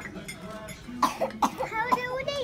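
A person coughing twice, sharply, about a second in, followed by voices.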